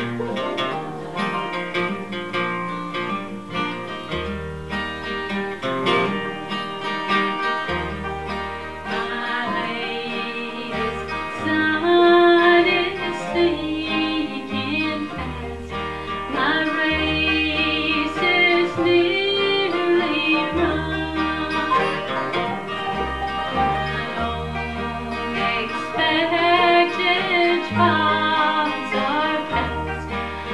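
Acoustic bluegrass band playing live: strummed acoustic guitars over plucked upright bass notes, with a woman singing the melody.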